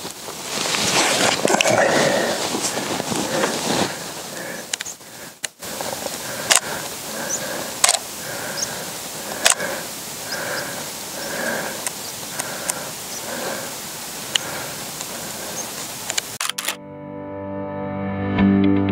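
Wind rushing on the microphone, then several sharp clicks from a DSLR camera being worked, over a soft sound that repeats about every half second. Music comes in near the end.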